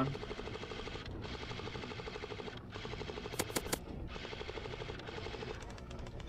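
Airsoft gun firing on full auto: two long strings of rapid shots with a short break about two and a half seconds in.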